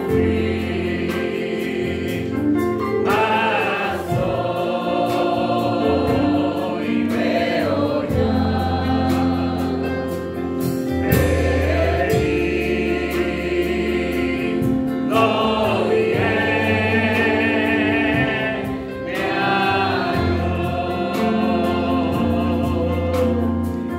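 Christian worship song sung by a man at a microphone in long, held notes, over steady electric keyboard and bass guitar accompaniment.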